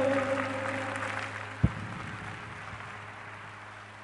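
Applause, fading steadily away as a held sung note ends, with a single low thump about a second and a half in.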